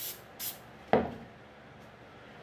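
Two short hisses from an aerosol can of temporary spray adhesive, about half a second apart, then a single knock about a second in as the can is set down on the table.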